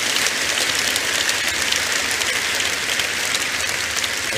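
Large congregation applauding, a dense, steady sound of many hands clapping.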